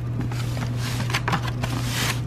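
Plastic carryout bag crinkling and a foam takeout box being handled, several short rustles over a steady low hum.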